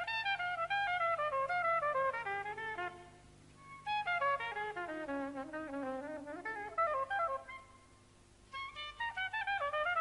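Soprano saxophone playing an unaccompanied jazz solo break: three phrases of quick, mostly descending runs, with short pauses between them.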